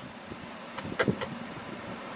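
Three short, sharp clicks in quick succession about a second in, over a faint steady low background rumble.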